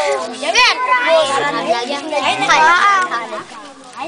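A group of voices, mostly children, talking and calling out over one another, with a lower adult voice among them; the chatter grows quieter near the end.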